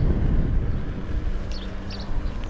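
Wind buffeting the microphone and road rumble while riding a KingSong S18 electric unicycle down a street. A faint steady hum runs under it, and a couple of short high chirps come about one and a half seconds in.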